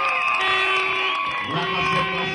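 Crowd blowing plastic horns in long, steady blasts, several at once and at different pitches, over crowd noise, as the crowd's response in a sound clash.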